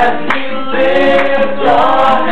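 A small group of voices singing a gospel song together in harmony, with an acoustic guitar strummed along.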